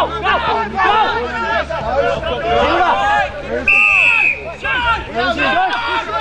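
Several voices shouting and calling over one another, indistinct, at a suburban football ground. A little past the middle comes one short, steady whistle blast.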